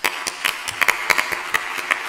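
Audience applauding: many irregular claps starting all at once, well above the level of the speech before.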